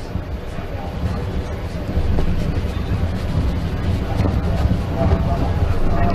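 NASCAR Xfinity stock car's V8 engine running at low speed, a steady low rumble on the TV broadcast's track audio that swells slightly about two seconds in.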